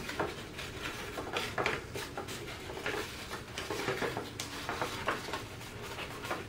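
Blue cardstock being folded and pressed by hand along its scored diagonal creases: soft rustling with scattered small crackles and taps of the stiff paper.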